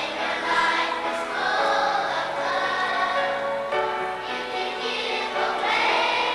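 A children's choir singing in unison, holding long notes that move to a new pitch every second or so.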